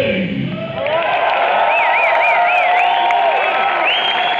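A live rock band's final note dies away, then the audience cheers, shouts and whistles, with one wavy whistle about halfway through.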